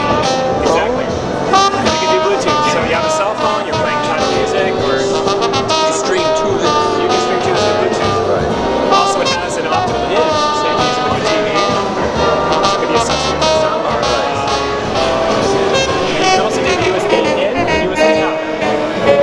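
Jazz with brass instruments playing through an all-in-one record player's built-in speakers, with voices in the background.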